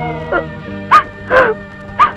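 A woman's short, high sobbing cries, three or four brief catches of voice, over a steady background film score.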